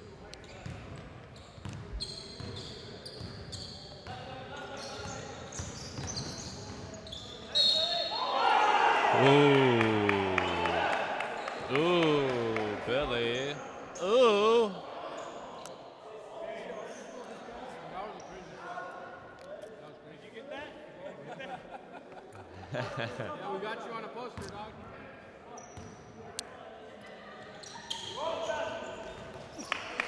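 Basketball game on a hardwood gym court: the ball bounces and thuds on the floor with sneaker noise, echoing in the large hall. Players shout loudly for several seconds in the middle.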